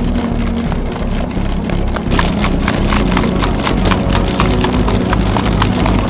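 Hoofbeats of a ridden Marwari horse on a packed dirt track: a quick, even run of sharp strikes, denser from about two seconds in, with music playing underneath.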